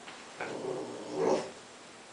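A Basenji puppy gives two short vocal sounds, the second and louder one about a second and a quarter in.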